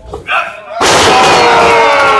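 A wrestler slammed onto the ring canvas: a sudden loud bang about a second in, followed at once by spectators shouting.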